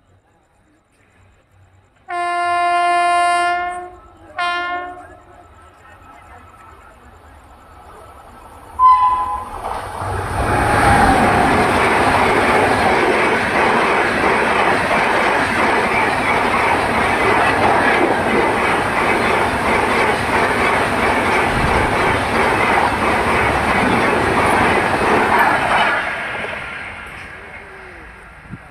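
Sealdah Rajdhani special express, an Indian Railways passenger train, sounding its horn in one long blast and then a short one as it approaches. About ten seconds in, it runs through the station at high speed: a loud, steady rush of wheels and coaches with a clickety-clack on the rails lasts about sixteen seconds, then fades as the train goes away.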